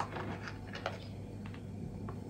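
Light clicks and taps of handmade soap flower pots being handled on a plastic digital kitchen scale, one lifted off and another set down, with a sharper click at the start and a few faint ticks after it.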